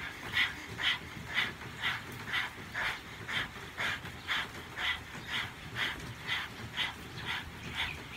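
Several people panting rapidly through the mouth with tongues out, like a dog: kundalini yoga tongue breathing, inhaling and exhaling from the diaphragm. The breaths come in a steady rhythm of about two a second.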